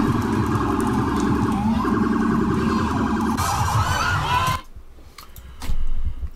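Police vehicle sirens wailing in a street, with a gliding rise in pitch about two seconds in. The sound cuts off suddenly about four and a half seconds in.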